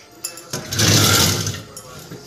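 A burst of rustling and scraping about a second long, from rummaging among things in a kitchen cupboard to take out a plate.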